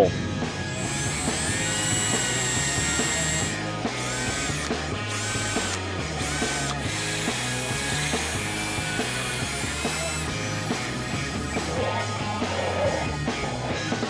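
Cordless drill boring a hole into a block of clear ice, its motor whining steadily with three short bursts in the middle, over background music.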